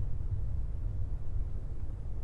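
A steady, low rumble in the deep bass, with no distinct bangs or clicks.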